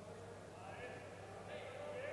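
Faint indoor handball-hall ambience: distant voices of players on court, reverberant, over a low steady hum.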